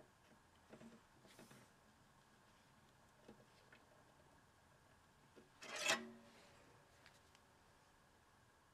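Faint clicks and rubbing of a small hand screwdriver working at a screw in a metal license plate fixed to an archtop guitar body, with one short, louder scrape about six seconds in.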